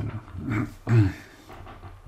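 A man coughing to clear his throat: two short bursts close together, about half a second and one second in.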